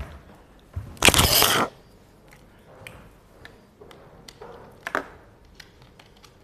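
A person moving about near the microphone: a loud crackling rustle lasting about half a second, about a second in, followed by scattered light taps and knocks.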